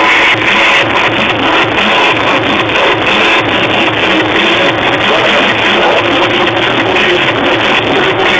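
Loud electronic dance music played over a club sound system, running steadily without a break.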